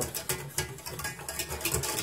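Quick, irregular light clicks and taps of a utensil stirring in a pot of powdered packet gravy.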